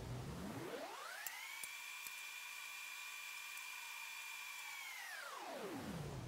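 A fast-forward effect: the low background hum of the room is sped up, so it is heard as a faint whine that rises steeply over about a second, holds a steady high pitch, then falls back down near the end as the playback returns to normal speed.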